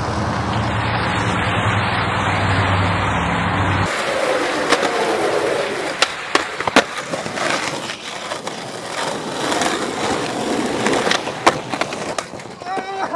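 Skateboard wheels rolling over asphalt with a steady rumble. About four seconds in the sound changes, and sharp clacks of the board's tail and wheels hitting the pavement come several times as tricks are tried, with rolling in between.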